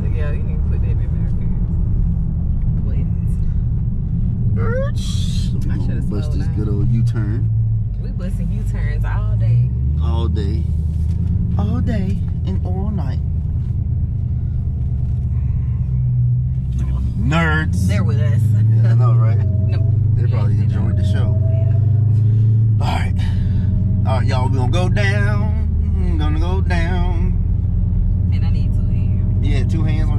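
Supercharged Hemi V8 of a Dodge Hellcat droning steadily inside the cabin while being driven, its note stepping up and down a few times; people talk and laugh over it.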